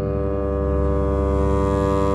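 Contemporary chamber-orchestra music: a dense chord of many notes held steady over a deep low drone, swelling slightly.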